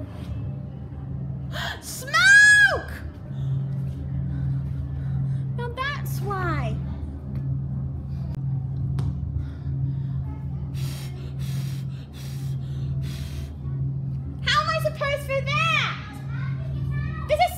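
A person's short high-pitched exclamations, rising and falling in pitch, and several breathy gasps over a steady low hum.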